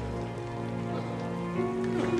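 Steady rain falling on wet cobblestones, under background film music of long held notes, with a new note coming in about a second and a half in.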